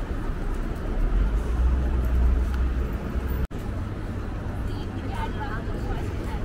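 Outdoor ambience of a busy pedestrian street: a steady murmur of passers-by and city background, with a low rumble that swells about a second in and eases off after about three seconds. The sound cuts out for an instant about halfway through.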